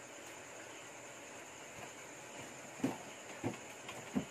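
Quiet background hiss with a faint steady high whine, broken by two brief soft knocks near the end.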